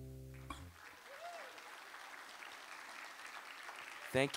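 The last chord of an oud rings on and fades out within the first half second, then an audience applauds faintly and steadily.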